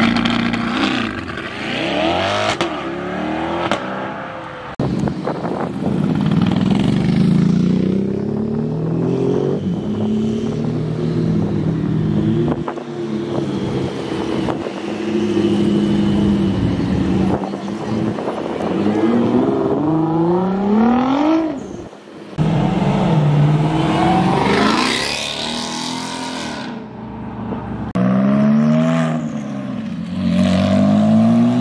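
Sports car engines revving and accelerating away, one car after another. Several rises in engine pitch are heard as the cars pull off, with sudden changes in the sound about five seconds in and again past the twenty-second mark.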